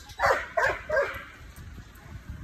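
Doberman barking three short times in quick succession in the first second, then quiet.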